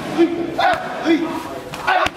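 Kicks and knees landing on Thai pads held by a trainer: sharp smacks, one a little before a second in and another near the end, with short shouted cries between them, as fighters and trainers shout with each strike.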